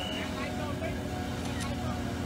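Steady street din of a tow truck's engine running while onlookers talk in the background, with a faint high whine that cuts off just after the start.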